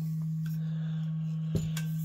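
A steady low hum, with one light knock about one and a half seconds in as a stainless steel vacuum bottle is picked up from the bench.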